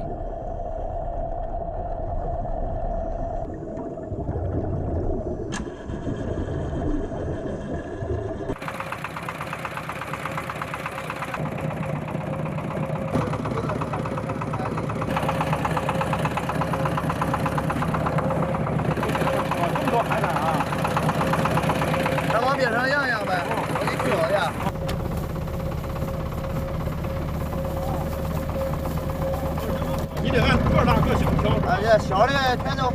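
A muffled, dull underwater sound for about the first eight seconds, then a sudden change to a boat engine idling steadily at the surface, with water noise around it.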